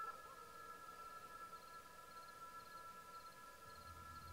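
Quiet, steady, eerie electronic tone of several high pitches sounding together: the green Kryptonian crystal's call. A faint, quick ticking pattern repeats in small groups above it.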